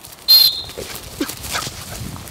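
A dog gives one short, high-pitched yelp about a third of a second in, followed by a few faint whimpers.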